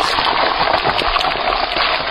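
Steady, loud sizzle of an egg frying in a hot pan, played as a sound effect after the line "this is your brain on drugs".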